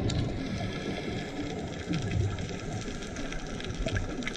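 Underwater ambience recorded from a camera submerged over a coral reef: a muffled low water rumble with sparse, sharp clicks scattered through it.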